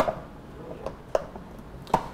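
Black ABS plastic lid of a junction box clacking down onto the box at the start, followed by a few lighter plastic clicks as it is seated and handled.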